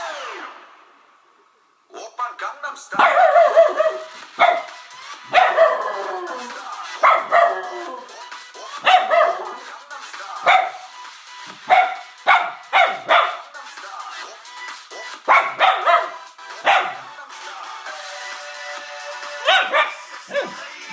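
A dog barking over and over, about twenty barks, some coming in quick pairs or triples, reacting to music played from a laptop. The music cuts out right at the start, and the barking begins about two seconds in.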